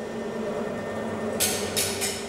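Indoor room tone: a steady low hum, with two short hissing sounds in quick succession about one and a half seconds in.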